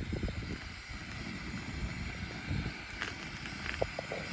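Wind rumbling on the microphone, with a few faint clicks about three seconds in.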